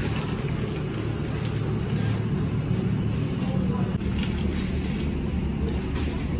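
Steady low hum of supermarket freezer cabinets running, with faint voices in the background.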